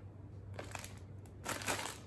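Crinkling of a thin plastic bag of shredded coleslaw mix being squeezed and turned in the hands, with a brief rustle a little under a second in and a louder stretch near the end.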